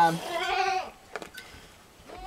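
A goat bleats once, a short, raspy call, followed by two faint clicks.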